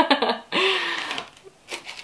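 A woman laughing: a few short breathy bursts of laughter that trail off, with a couple of faint light knocks near the end.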